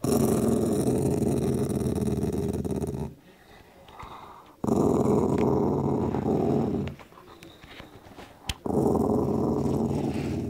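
Cavalier King Charles spaniel growling over its bone in three long growls of two to three seconds each, with short pauses between: guarding its meaty bone as a warning to whoever comes near.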